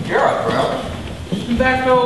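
Actors' voices on a theatre stage, ending with one long held voice note about one and a half seconds in.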